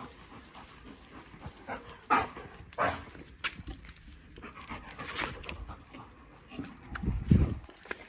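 A German shorthaired pointer panting after its retrieving work, with a few short scuffs and clicks. A louder low bump comes near the end.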